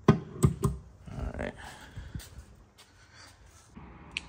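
The fuel filler door of a 2023 Honda CR-V Hybrid being pressed shut by hand, with three sharp clicks in the first second as it closes and latches. Softer taps and handling noises follow.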